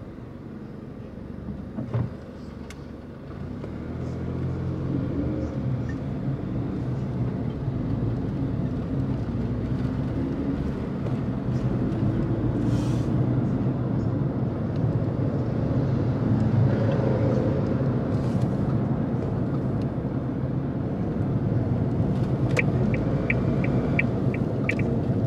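Engine and road noise heard from inside a car as it moves off from a standstill in traffic and speeds up, the engine note rising and then settling into a steady rumble of tyres and engine while cruising. There is a sharp knock about two seconds in, and a quick run of short, evenly spaced ticks near the end.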